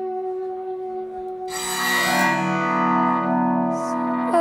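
Instrumental guitar drones from an acoustic guitar played flat on the lap and a hollow-body electric guitar: steady held notes, then about a second and a half in a louder, scraping chord swells in and rings on.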